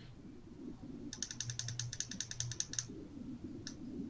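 Computer keyboard typing: a quick, even run of keystrokes, about ten a second for under two seconds, then a single keystroke near the end.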